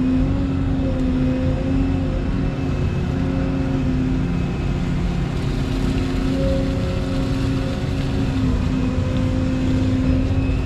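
Excavator's diesel engine and hydraulics running steadily under load, heard from inside the cab, while the boom lifts a bucket of wet mud out of the pond and swings it to the bank. The engine hum wavers slightly in pitch as the hydraulics take the load.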